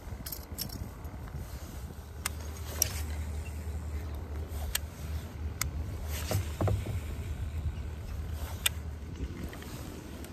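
Fishing rod and reel being handled and cranked: a few sharp, light clicks spread over a low steady rumble.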